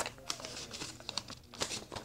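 Smart-watch packaging being handled and opened: irregular crinkling with scattered small clicks.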